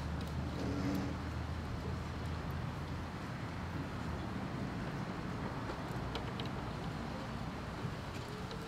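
Steady low rumble of road traffic, with a few faint clicks from fittings being handled around six seconds in.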